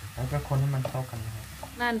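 Chopped onion, carrot and mushroom frying in a pan while being stirred with a wooden spatula: sizzling with scraping and stirring noises. A voice starts speaking near the end.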